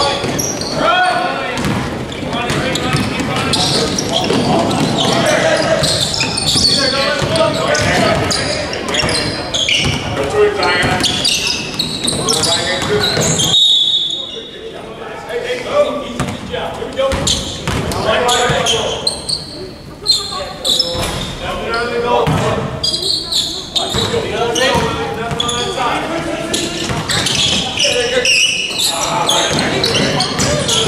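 Indoor basketball game sounds in a large gym: voices calling out across the court, with a basketball bouncing on the hardwood floor. About halfway through, a short high whistle sounds and play goes quieter for a couple of seconds.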